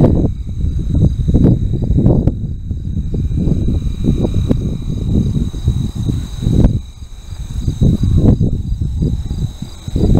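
Wind buffeting the camera microphone in gusts, a loud uneven rumble, over the steady high trilling of insects in the meadow grass.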